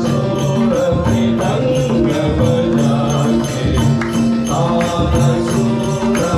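Nepali folk bhajan music: a held melody over a steady beat from a madal drum and small hand cymbals.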